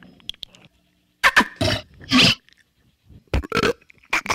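Electro-acoustic noise collage: irregular bursts of noise and sharp clicks broken by short silences, with a cluster of loud bursts between about one and two and a half seconds in and a shorter cluster near the end.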